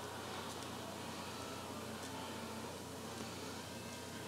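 Steady low hiss with a faint low hum: quiet room tone, with no distinct events.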